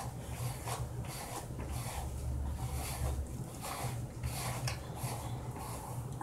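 Rubber-gloved hands rubbing a wet, watery hair color rinse through hair, in repeated soft strokes a little over one a second, over a low steady hum.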